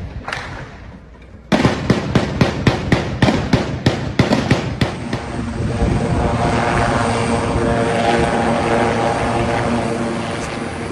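Rapid repeated gunshots, about three a second, with a short lull about a second in. From about five seconds a helicopter runs steadily.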